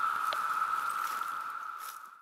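Chorus of Brood II 17-year periodical cicadas: a steady, high-pitched, eerie ringing that fades out near the end.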